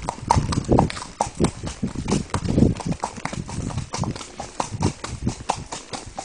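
A donkey's hooves clip-clopping on a paved road at a steady gait, about three hoofbeats a second.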